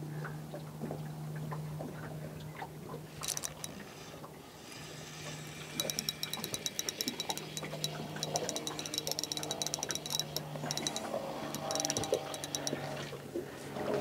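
Spinning fishing reel ticking rapidly as line is wound in on a hooked fish, in three runs of winding, over a steady low hum.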